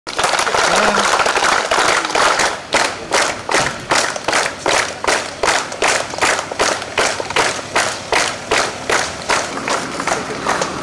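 A crowd clapping: dense applause at first, settling after about two and a half seconds into rhythmic clapping in unison, a little over two claps a second.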